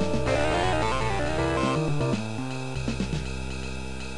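Six-voice wavetable-synthesized music from 1986 Studio Session software on a 68k Macintosh, playing a jazz tune with a bass line, drums (ride cymbal and snare) and electric piano, tenor and baritone sax voices. The level eases a little about halfway through.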